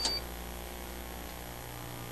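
A brief click with a short, high electronic beep right at the start, over a steady low hum.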